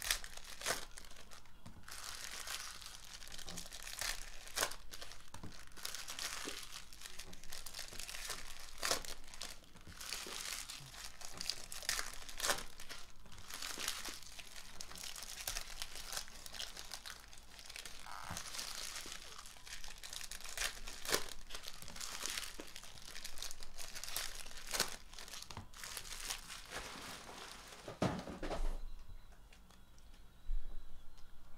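Foil trading-card pack wrappers crinkling and tearing as packs are ripped open by hand, a dense run of crackles that thins out near the end, with a soft thump shortly before it stops.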